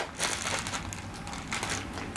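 Quiet rustling and crinkling of wrapped pressure bandage rolls being handled and lifted out of a fabric first-aid kit bag, with a couple of light taps.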